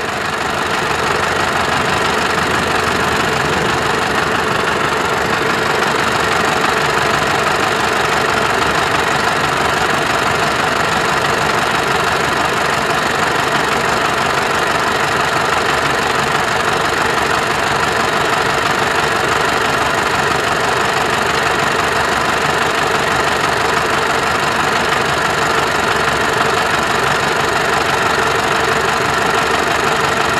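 Mahindra 8560 tractor's diesel engine running steadily, coming up in level over the first second or so and then holding even.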